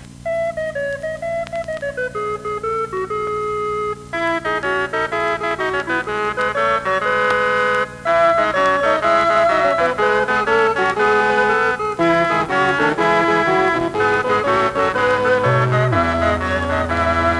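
A Dubreq Stylophone 350S stylus synthesiser multi-tracked five times, each part set to imitate a different instrument, playing a piece together. New parts come in about every four seconds, so the arrangement thickens as it goes.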